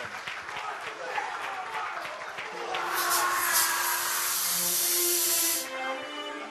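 Audience applauding, swelling louder about halfway through, with music playing underneath.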